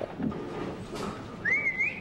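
A person whistling one short note that rises and then wavers, lasting about half a second near the end, over faint room noise.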